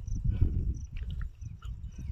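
Low, gusty wind rumble buffeting the microphone outdoors, with a few faint clicks and a faint high chirp repeating at an even pace.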